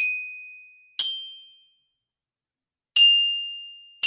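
Glockenspiel played with mallets: single high struck notes at the start, about a second in and about three seconds in, each ringing on and fading away. The third note follows a second of silence.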